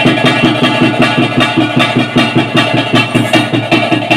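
Tulu bhuta kola ritual music, loud: drums beat a fast, even rhythm under a nadaswaram (double-reed pipe) playing held notes.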